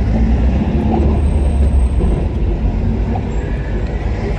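Low, steady rumble of a car driving slowly in city traffic, heard from inside the car: engine and road noise.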